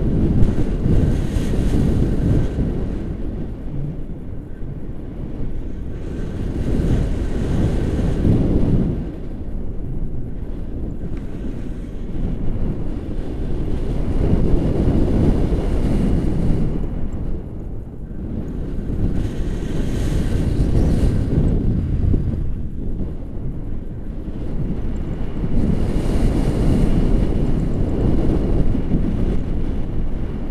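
Wind rushing over the camera microphone in flight under a tandem paraglider. The noise swells and eases every several seconds as the airflow changes.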